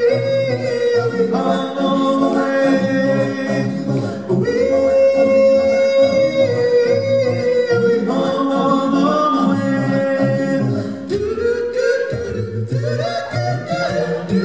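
Male a cappella group singing live through a PA, with no instruments. A high falsetto voice holds long notes over lower backing voices. About eleven seconds in, the high line gives way and the voices shift into a new, busier pattern.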